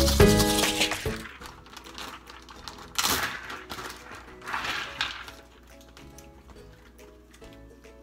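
Background music fading out within the first second, then a plastic zip-top bag rustling in two short bursts, about three and four and a half seconds in, as it is pulled open.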